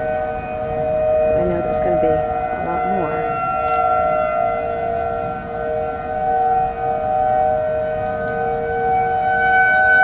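Outdoor tornado warning sirens sounding a steady wail, several sirens at slightly different pitches overlapping. One of the tones edges up in pitch and the sound grows a little louder near the end.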